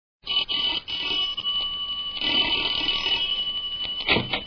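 Hissy old radio transcription audio with a thin, steady high whistle running through it and faint music underneath, starting about a quarter second in.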